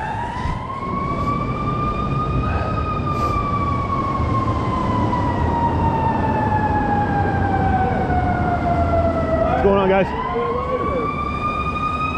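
A siren wailing in slow sweeps: its pitch rises for a few seconds, falls for several more, then starts to rise again near the end, over a low rumble of street traffic.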